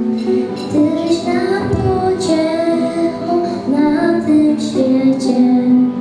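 A young girl singing a Christmas carol into a microphone, in long held notes, with acoustic guitar accompaniment.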